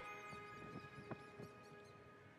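Faint background music in a quiet passage: soft held notes dying away, with a few light taps.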